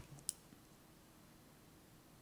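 A single short, sharp click about a third of a second in, otherwise near silence with faint room tone.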